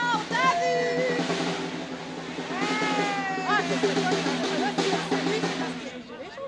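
Demonstrators' voices: several high, wavering calls and shouts that rise and fall, one of them held for about a second in the middle, over crowd noise and a steady low drone.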